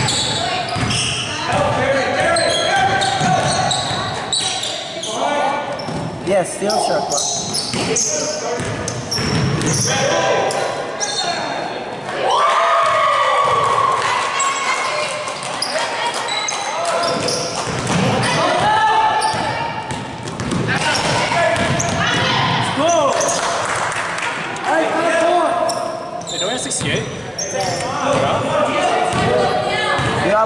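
Basketball game on a hardwood gym floor: the ball bouncing and players moving, with players' shouts and calls throughout, in a large gymnasium hall.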